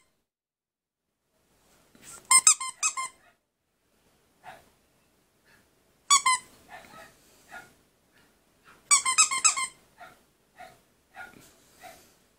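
A squeaky dog toy squeezed in quick bursts of several high-pitched squeaks, three bursts in all with a few single fainter squeaks between, used to catch the corgi puppy's attention.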